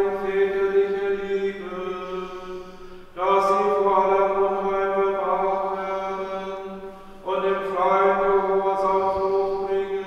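Sung church liturgy: voices chanting in long, held notes that move in slow steps, with each phrase starting afresh about three seconds and again about seven seconds in and fading toward its end, over a steady low note that carries on between phrases.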